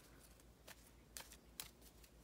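A deck of playing cards being shuffled by hand: four faint, soft clicks of the cards.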